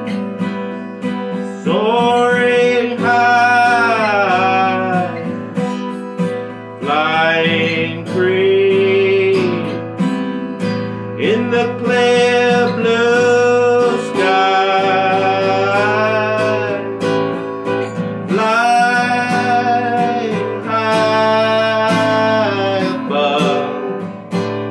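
A man singing long held notes with vibrato over a strummed acoustic guitar.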